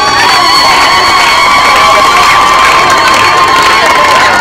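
A woman's long, high-pitched ululation held on one note for about four seconds, ending near the end, over a crowd clapping and cheering.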